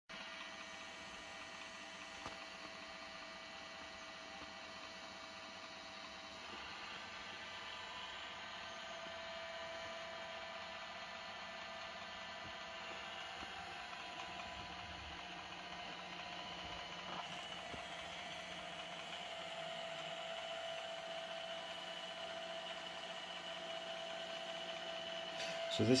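iRobot Roomba S7 robot vacuum's motors giving a steady whine with a low hum as it drives and turns slowly on carpet while searching for its dock. The sound gets a little louder about six seconds in.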